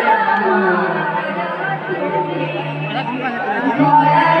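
Voices chattering over a steady, held musical drone, in a pause between the sung lines of a live kirtan.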